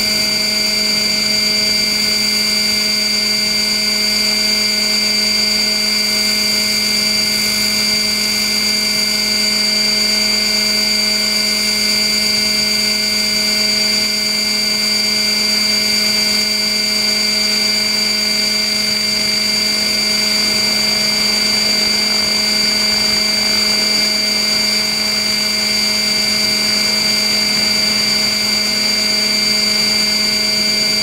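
Radio-controlled Hirobo model helicopter's motor and rotors heard up close from its onboard camera: a loud, steady whine held at one constant pitch, with no change in speed.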